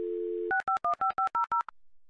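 Telephone dial tone for about half a second, then about eight quick touch-tone keypresses, each a short two-note beep, as a number is dialed.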